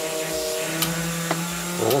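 Injector test and flushing stand running in hold-open mode: its electric pump hums steadily while four fuel injectors spray cleaning fluid into bottles. A lower hum joins about two-thirds of a second in, as the fluid runs low; the operator suspects the pump is starting to draw air.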